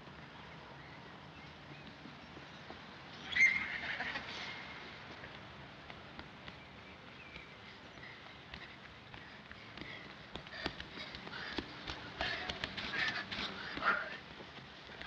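Outdoor ambience with birds calling: one loud call about three seconds in and fainter calls later. Near the end there are quick crunching steps on leaf litter.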